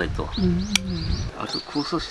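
Low conversational voices, with one drawn-out low vocal sound in the first second. A small bird chirps repeatedly in quick high notes in the background, and there is a single sharp click about three-quarters of a second in.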